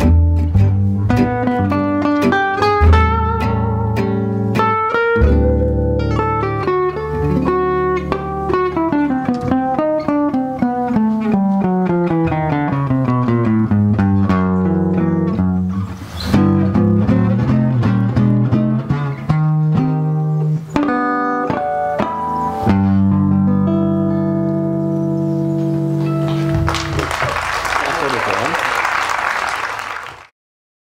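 Jazz manouche (gypsy swing) played live by two acoustic guitars and a plucked double bass: quick picked guitar lines, with a long falling run in the middle, over walking bass notes. Near the end the playing settles on held chords and applause breaks out.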